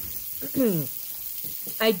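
Diced onions and mushrooms sautéing in a frying pan, a low steady sizzle. A short falling hum from a voice comes about half a second in, and a throat-clear near the end.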